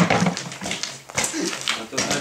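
People's voices, with a few short sharp sounds in the second half.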